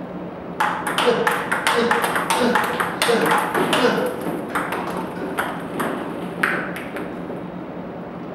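Table tennis balls clicking in quick succession off the table and rubber-faced paddles in a multi-ball feeding drill, several hits a second. The hits start about half a second in and thin out near the end.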